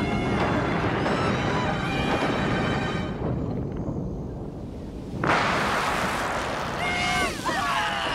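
Cartoon eruption sound effects: a rumble that fades down, then a sudden loud blast about five seconds in, followed by a crowd of cartoon voices screaming near the end, with music underneath.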